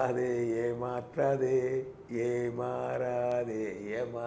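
A man's voice chanting in three long held phrases, each on a nearly steady pitch.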